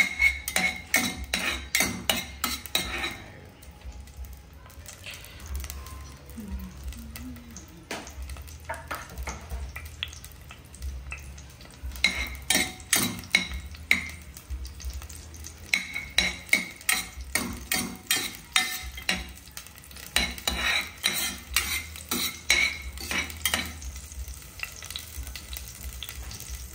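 Chopped garlic sizzling in oil in a stainless steel pot, stirred with kitchen tongs that tap and scrape against the pot in several runs of quick clicks.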